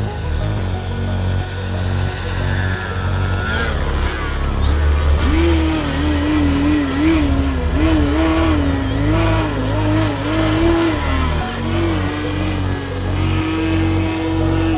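Electric motor and propeller of a Flex Innovations Mamba 10 aerobatic RC plane, the whine rising and falling quickly in pitch as the throttle is worked, starting about a third of the way in. Background music with a heavy bass runs underneath.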